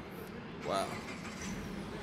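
Steady city street traffic noise, with a man's short exclaimed "wow" about a second in.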